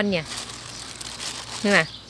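Thin plastic bag crinkling as a hand pushes a bunch of freshly picked flowers into it.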